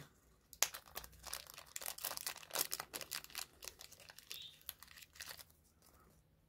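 Small clear plastic bag crinkling and crackling as it is handled and opened by hand. A dense run of small crackles starts about half a second in and dies away near the end.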